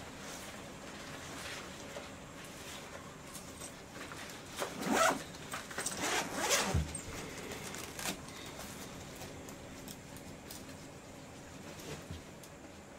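Clothing rustling with short rasping rips, loudest about five and six and a half seconds in, as a jacket is pulled off a patient's arm and a blood pressure cuff is wrapped and fastened around the upper arm.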